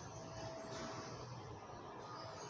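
Faint, steady background noise of a parking lot, with a thin steady tone for about a second near the start.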